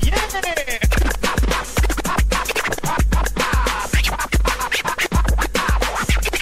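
Hip hop beat with a heavy kick drum about twice a second, with a DJ scratching a vinyl record on a turntable over it. The scratches sweep up and down in pitch at the start and again about two-thirds of the way through.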